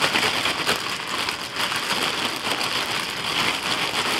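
Zip-top plastic bag crinkling as oiled, diced raw butternut squash cubes are shaken and tumbled inside it: a steady, dense crackle of plastic with many small knocks from the pieces.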